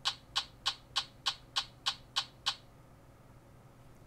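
Insta360 One X2 360 camera in night shot mode making nine short shutter clicks, about three a second, then stopping. It is shooting a rapid series of pictures, which the owner takes for several exposures like an HDR.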